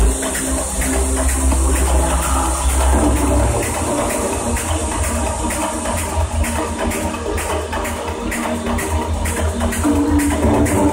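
Electronic dance music (techno) played loud over a festival sound system and recorded from within the crowd. A held deep bass note gives way about three and a half seconds in to a fast, pulsing bass line.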